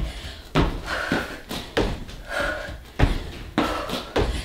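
Thuds of feet landing on an exercise mat and on an inflated half-dome balance trainer during burpees, about six impacts spaced irregularly.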